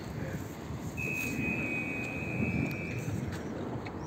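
Tram door warning signal: one steady high electronic beep lasting about two seconds, over a low rumble of street and traffic noise.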